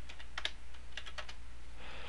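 Computer keyboard keys struck a few times in quick clusters, entering a number, over a steady low electrical hum.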